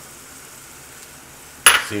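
Butter and flour sizzling softly in a saucepan over a gas flame, the pan running a little hot. Near the end comes one sharp clink of glassware.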